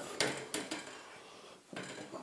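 Light handling clicks and knocks of metal Parf Guide System rulers and a metal guide block being handled on a wooden workbench top: two sharp clicks within the first second, then faint handling noise.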